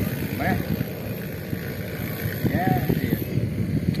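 Wind buffeting the microphone with an irregular rumble, broken twice by brief voice sounds, short hums or exclamations from the angler.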